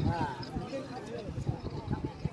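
Crowd of kabaddi spectators talking and calling out, with one voice rising over the others right at the start. Irregular dull knocks, several a second, run under the voices.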